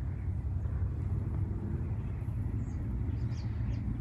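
Outdoor ambience: a steady low rumble with a faint, even background hiss.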